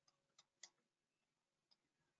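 Near silence, broken by four faint, sharp clicks: three within the first second and one near the end.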